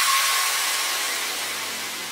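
The tail of an electro track: a hiss of white noise left after the synths cut off, fading steadily, with a faint low hum coming in under it near the end.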